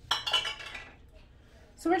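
Short clatter and clink of kitchen items being handled and set down on the counter (a knife, a glass measuring cup and an onion on a wooden cutting board), lasting under a second at the start, followed by a quiet stretch.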